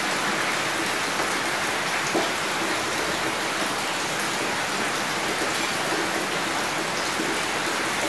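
A steady hiss like heavy rain falling.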